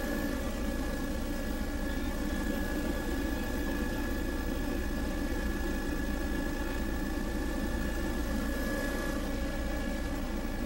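Steady engine and airframe noise of a low-flying survey aircraft in level cruise, an even drone with a thin steady high whine over it.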